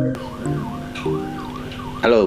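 Background music: sustained notes under a high warbling tone that rises and falls about three times a second.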